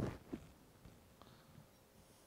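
Wire whisk stirring a thin milky liquid in a glass bowl. Two light knocks come right at the start and about a third of a second in, then a few faint ticks.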